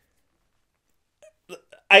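Silence for over a second, then a few faint, short mouth sounds, and a man's voice starting to speak near the end.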